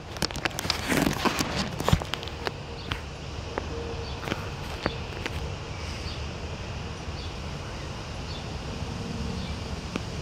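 Scattered clicks and knocks of a phone and eclipse glasses being handled, thickest in the first half, over a steady background hiss.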